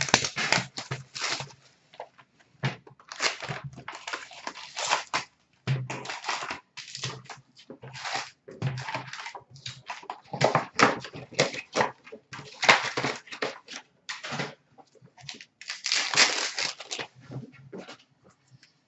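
Upper Deck hockey card box and packs being torn open by hand: a string of irregular crinkling and tearing bursts of cardboard and foil pack wrappers.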